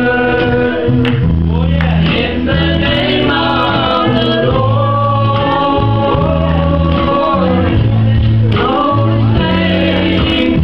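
Live gospel worship music: a group of voices singing over a band, with loud bass notes held and changing about once a second.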